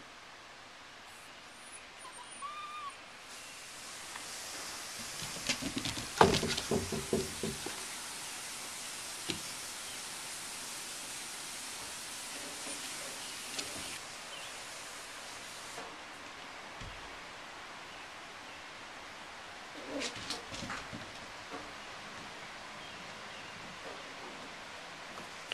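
Welsh Terrier puppies scuffling in play on a concrete deck, with a flurry of knocks and scrapes about six seconds in and a few more around twenty seconds, over a faint steady hiss.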